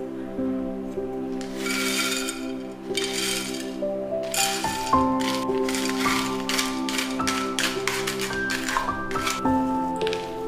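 Soft background music with long held notes. Over it come rustling scrapes and then, in the second half, a quick run of small clinks: gravel being scooped and stirred in a clay bowl.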